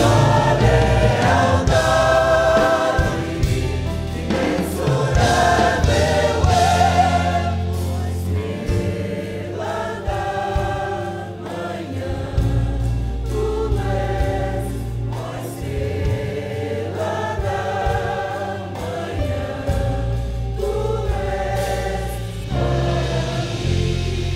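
Mixed church choir singing a Portuguese worship song in several voices, with sustained keyboard accompaniment. The phrases are fuller and louder in the first third.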